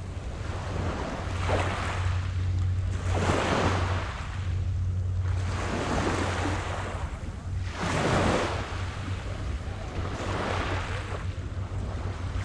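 Small waves washing onto a pebble beach, a surge rising and falling away every couple of seconds, over a steady low hum.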